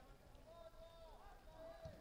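Near silence, with faint distant voices from the field.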